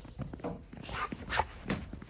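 Bouvier puppy moving and nosing through snow: a run of short, irregular crunching, snuffling noises, about five in two seconds.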